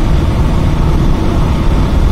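Steady road and wind noise from inside a vehicle driving along a highway, a loud low rumble with a hiss over it.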